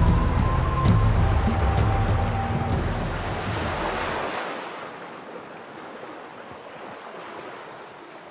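Dramatic background music with percussive strikes ends about four seconds in. It leaves the wash of sea waves, which fades out gradually.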